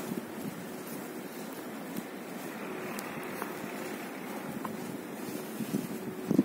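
Steady rushing wind noise on a phone microphone outdoors, with a faint steady hum underneath.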